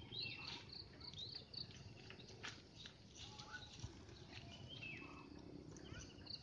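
Faint birdsong: short chirps and whistled notes from more than one bird, some of them sliding down in pitch.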